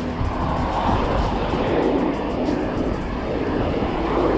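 Wind rushing over the camera microphone and tyre noise from a bicycle riding on asphalt, with car traffic on the road.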